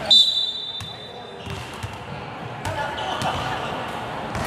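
Pickup basketball on a hardwood gym floor: a sharp knock right at the start, then a high steady squeal lasting about a second and a half. Scattered ball thuds and faint voices follow.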